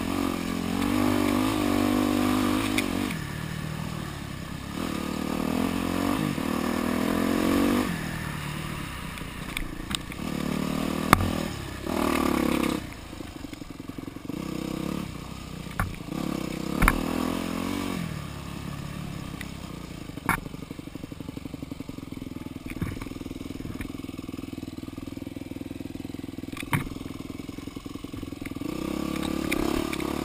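Yamaha dirt bike engine revving up and down in repeated bursts of throttle, then running lower and quieter for most of the second half before picking up again near the end. Several sharp knocks and some clatter from the bike going over rough ground.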